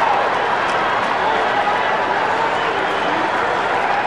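Ballpark crowd cheering steadily after a home run.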